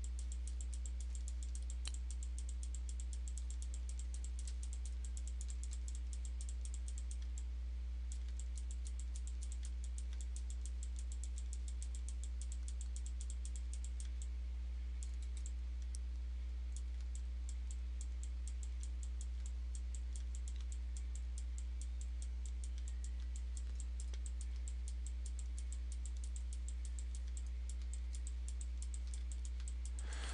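Fast, light clicking from a computer's mouse and keys, many clicks a second with a couple of brief pauses, over a steady low electrical hum.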